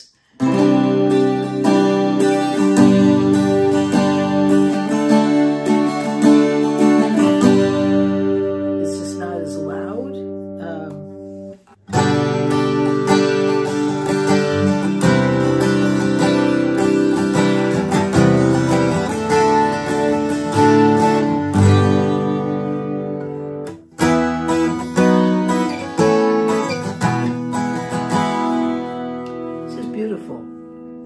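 Twelve-string acoustic guitars strummed in chords that ring out: first a Taylor Builder's Edition 12-fret concert-size twelve-string, then, after a brief stop, a 1980 Takamine EF385 twelve-string playing, which pauses briefly once more before carrying on.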